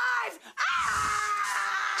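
A woman screaming: one long, high-pitched scream that starts about half a second in and holds steady, after the tail of a man's shout.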